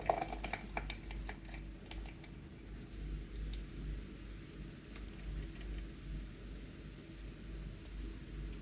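Latte shake pouring from a carton into a plastic blender cup of ice, with small clicks and drips that are thickest in the first couple of seconds and sparse after, over a faint steady low hum.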